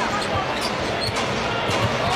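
A basketball being dribbled on a hardwood court, several bounces over steady arena crowd noise.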